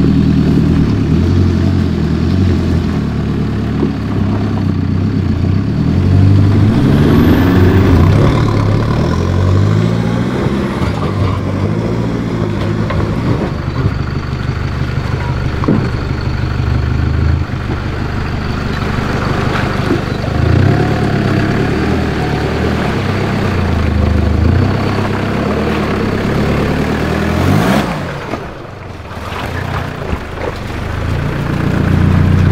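Toyota Hilux's 3-litre 1KD turbo-diesel engine running at low speed, its revs rising and falling as the vehicle crawls over rough ground off-road. The engine note dips briefly near the end.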